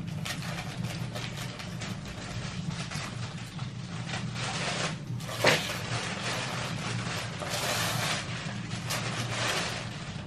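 Gift wrapping paper being torn open and crumpled by hand: continuous crackling and rustling, with one sharp rip about five and a half seconds in.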